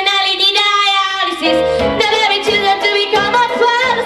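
A young girl singing solo into a microphone over a pop backing track. She holds one long note at first, then moves into shorter phrases.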